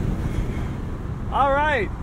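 Wind buffeting and road noise in the open cabin of a roadster at speed, top down, a steady low rush. Near the end a short drawn-out vocal sound from the driver rises and falls in pitch.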